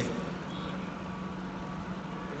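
Steady background noise with a low, even hum and no distinct event.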